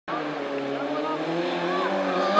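Stock hatchback autograss race car engine running, its note climbing slowly as the car comes on.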